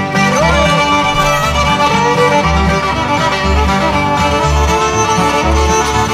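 Old-time string band playing an instrumental break: a fiddle leads with sliding notes over strummed guitar and banjo, with a steady low bass note about once a second.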